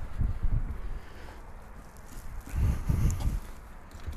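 Footsteps on a flat roof with a low rumble on the microphone, loudest in the first second and again about two and a half seconds in.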